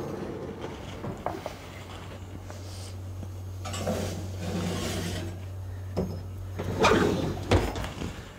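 Oven door opened and a ceramic baking dish slid in onto the rack, with scraping and rustling midway, then the door shut with a knock and a thud near the end. A low steady hum runs until the door shuts.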